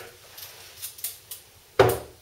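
A few faint light taps and clinks, then one loud knock near the end: a glass beer bottle being set down on a wooden shelf.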